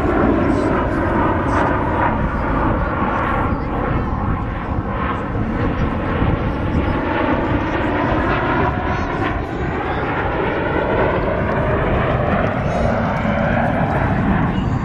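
The Blue Angels' F/A-18 Hornet jets flying over in a six-ship formation: a loud, steady jet noise whose tone slowly sweeps as the formation passes.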